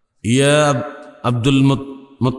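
A man's voice through a microphone intoning Arabic in a chanting, recitation style: one long drawn-out syllable, then a few shorter ones.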